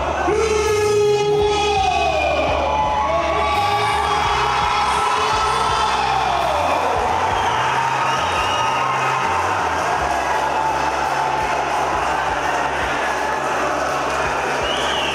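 Arena crowd cheering and shouting, with music with a steady low bass line playing underneath.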